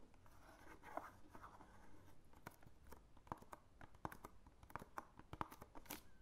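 Fingertips tapping and scratching on a cardboard product carton, faint: irregular light clicks throughout, growing more frequent in the second half, with a short rubbing scrape about a second in.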